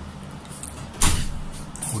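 Eating noises from a man taking a forkful of pasta, over a low steady hum: about a second in comes a sudden loud rush of noise that dies away within a fraction of a second.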